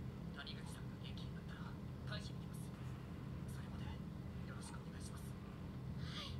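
Faint, quiet speech from the anime's dialogue, mostly only its hissing consonants coming through, over a steady low hum.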